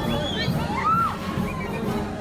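Crowd of spectators shouting and cheering, with several high-pitched shouts and whoops rising and falling over the general crowd noise.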